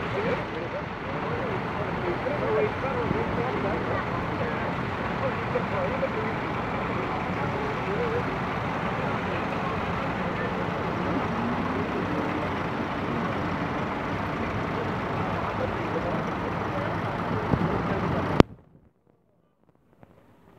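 Several vintage tractor engines running as a line of old tractors drives slowly past on wet tarmac, with voices mixed in. The sound cuts off suddenly shortly before the end.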